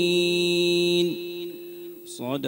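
A man's voice in melodic Qur'anic recitation (tajwid), holding one long, steady note that ends about a second in and then trails away.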